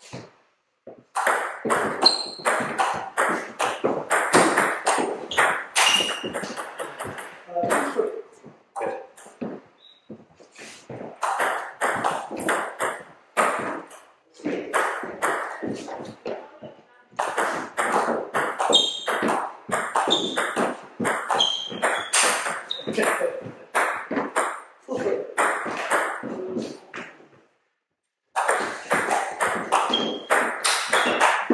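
Table tennis rallies: the ball clicking off the bats and the table in quick runs of strokes, broken by short pauses between points. Voices are mixed in.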